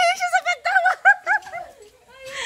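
A woman laughing in a high, squealing voice: a quick run of short rising-and-falling notes that trails off near the end.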